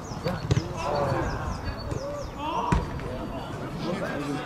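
A football is kicked on an artificial-turf pitch: sharp thuds come about half a second in and a harder one near three seconds, among players' shouts. Behind them a bird repeats a short falling chirp about three times a second.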